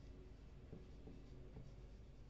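Faint sound of a marker writing on a whiteboard, in a few short strokes.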